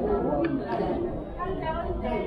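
Indistinct chatter of many people talking at once, a steady mix of voices with no single speaker standing out.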